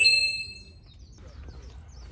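A single bright chime strikes at the start and rings out, fading within about a second: a sound effect marking a title card.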